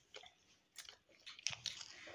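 Faint chewing of a fried bread chop snack close to the microphone, heard as a few soft, scattered crunchy clicks.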